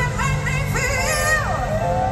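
Female soul vocalist singing live into a microphone over a backing band, amplified through a PA. Her melody wavers with vibrato, bends down on a sustained note around the middle, then settles on a held note.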